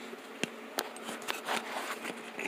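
Several small clicks and taps from plastic sunglasses being handled, the sharpest about half a second in, over a steady low hum.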